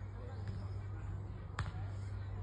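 A golf putter striking a golf ball in a putt: a single crisp click near the end, over a steady low hum.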